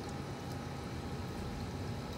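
Steady low rumble and hiss of aquarium water circulation and pumps, heard through the water.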